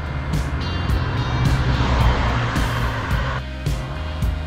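Background music with a car passing on the road: its tyre and engine noise swells and fades over about three seconds.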